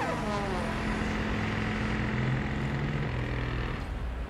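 Steady engine-like rumble and hiss with a low drone. The falling final notes of theme music die away in the first half-second.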